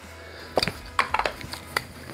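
Handling noise: about half a dozen light knocks and clinks over a second or so, as a can of cooking spray is picked up from among items on a countertop.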